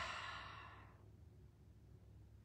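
A woman's breathy sigh, one exhale that fades out within about a second, over a low steady hum.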